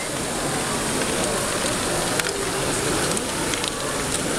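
LEGO Technic Great Ball Contraption modules running: a steady crackling clatter of small plastic balls and gears being moved through the mechanisms, with a few sharper clicks.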